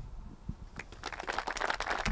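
Light applause from a small audience: a few claps at first, thickening into a dense patter of irregular claps about a second in.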